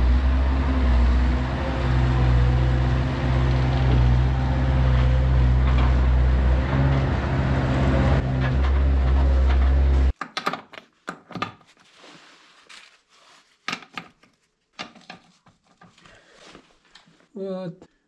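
Bobcat 751 skid-steer loader's diesel engine running as the machine drives in, then shut off abruptly about ten seconds in. After that, scattered light clicks and knocks.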